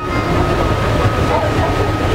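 Passenger ferry under way, heard on board: a steady low engine rumble under an even rush of noise.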